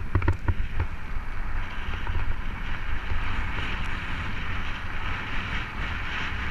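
Wind buffeting the camera microphone with a steady low rumble while a mountain bike rolls over a gravel trail, a few sharp rattles from bumps in the first second. A rushing hiss of wind and tyres on gravel grows stronger about a second and a half in as the bike picks up speed.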